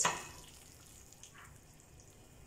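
Thick meat curry being tipped from a metal pan into a baking dish: a brief sharp slosh or knock at the start, then only faint, soft sliding of the sauce.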